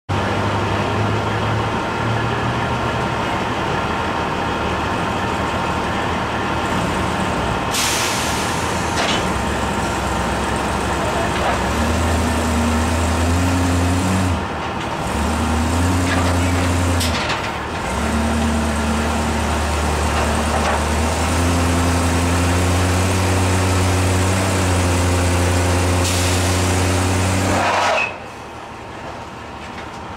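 Vehicle engines running while a van is driven up a car-carrier trailer's ramp, the engine note rising and falling in long stretches as it climbs. Several short hisses of air come through, and the engine noise drops away abruptly near the end.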